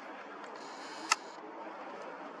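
Faint steady background noise with a single sharp click about a second in.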